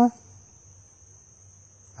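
Insects chirring in a steady, continuous high-pitched drone over a faint low background hum.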